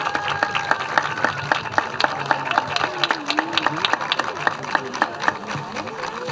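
Audience clapping, with the separate claps of several people audible, and voices talking in the crowd.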